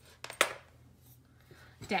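Handling noise on a tabletop: a couple of light clicks and one sharp knock about half a second in as the rotary attachment and tumbler are handled, then quiet room tone.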